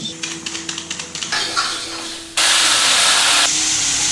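Metal spatula clinking and scraping in a wok of frying curry, then about two and a half seconds in a sudden loud hiss and sizzle as water from a kettle hits the hot oil and turns to steam.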